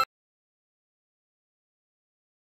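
Dead silence, after a short tone cuts off abruptly at the very start.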